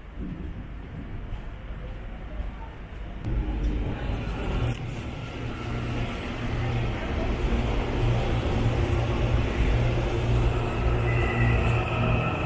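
A heavy vehicle rumbling steadily with a low engine or motor drone, growing louder about three seconds in and holding there.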